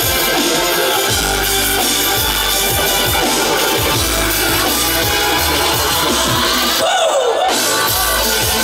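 Live electronic music with a drummer on an acoustic kit, played loud through a festival sound system: heavy bass under a steady kick-drum beat. Near the end the bass and cymbals cut out for about half a second under a swooping synth sweep, then the beat drops back in.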